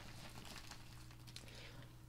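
Faint crinkling and rustling of a padded kraft mailer as hands reach into it and pull out pens.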